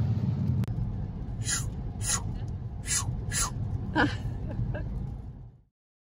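Steady low road rumble inside a moving car's cabin, with four short breathy sounds in the middle and a brief vocal sound about four seconds in. The rumble fades out shortly before the end.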